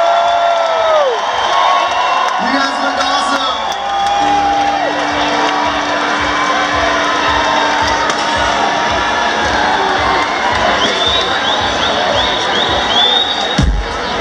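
Live concert crowd in a festival tent cheering and whooping between songs, while the band's instruments noodle and hold a long steady note. A deep drum thump comes near the end as the next tune begins.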